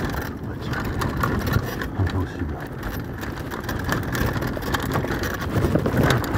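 Mountain bike rolling fast down a rough dirt trail: tyre noise over dirt and stones with a constant clatter of knocks and rattles from the bike.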